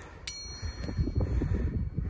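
A single bright bell ding about a quarter second in, a clear ringing chime that holds steady for well over a second: the notification sound effect that goes with a subscribe-button animation. Under it, from about half a second in, irregular low rumbling noise.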